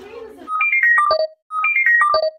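A short electronic tune of clear, high notes, played twice and loud. Each phrase leaps up, steps down through several notes and ends on a low note, with a dead-silent gap between the two.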